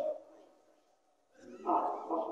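A man's voice over a public-address system: a phrase trails off, about a second of near silence follows, and the voice starts again with a short, loud exclamation near the end.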